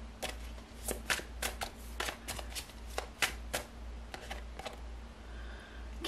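A deck of tarot cards being shuffled by hand, the cards slapping together in a quick, irregular run of soft clicks that thins out over the last couple of seconds.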